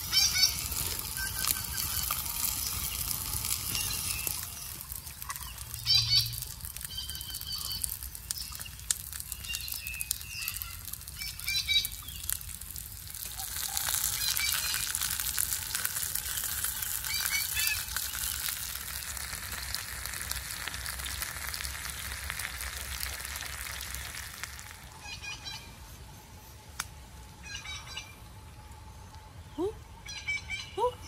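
Whole fish sizzling on a hot grill over a wood fire, a steady hiss that swells and fades, with fine crackling from the fire. Short bursts of high bird chirps come through a few times.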